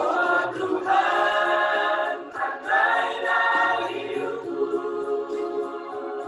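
Mixed choir of men and women singing an Indonesian Christian song in harmony. The voices come in full at the start with long held chords and ease off somewhat after the middle.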